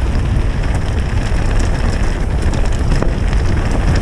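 Wind buffeting the microphone: a loud, steady rumble with hiss above it and faint crackles through it.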